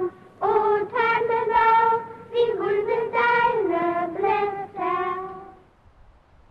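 A group of children singing a slow melody in unison, in short phrases of held notes that step up and down. The last phrase dies away shortly before the end.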